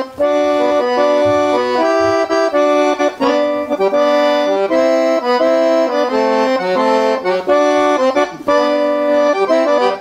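Accordion (sanfona) playing a quick, lively melody over lower chord notes, in traditional northeastern Brazilian style; it cuts off suddenly at the end.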